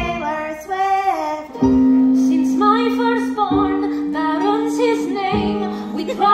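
Live musical-theatre finale: women singing through amplified microphones over an accompaniment of held low chords that change about every two seconds, with wavering sung phrases on top.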